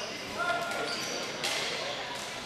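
Ball hockey play in an echoing arena: sharp clacks of stick and ball on the floor, about half a second in and again near a second and a half, over players' calls.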